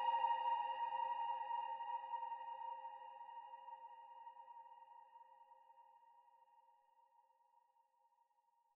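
Closing held keyboard-synth chord of a trap instrumental, ringing out with no drums under it and fading away steadily over about six seconds.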